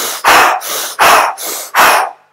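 A man panting quickly and hard, imitating a runner's breathing: loud breaths out alternating with softer breaths in, about three breaths a second.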